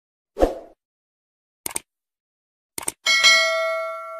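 Subscribe-button animation sound effects: a soft thump, two quick double clicks, then a bell ding about three seconds in that rings and fades out.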